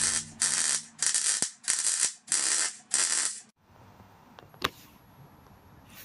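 MIG welder crackling in about six short, evenly spaced bursts, like a run of stitch welds, stopping after about three and a half seconds. A single sharp click follows in the quiet.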